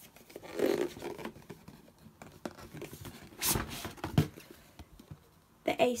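Card sleeve being slid off a cardboard box: dry scraping and rubbing of card on card, in a few strokes, the loudest about three and a half seconds in.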